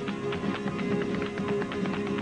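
Flamenco footwork (zapateado): the dancer's shoes strike the wooden stage in a quick, dense run of heel and toe beats. Flamenco guitars play the bulerías accompaniment underneath.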